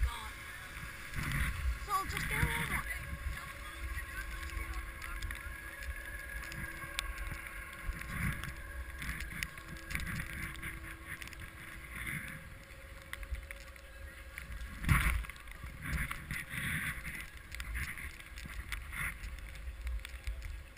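Skis sliding over snow, with uneven rumbling wind noise on the action camera's microphone. A louder knock comes about fifteen seconds in.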